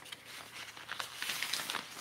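Faint rustling and a few light clicks of hands handling the sections of a three-piece fishing rod.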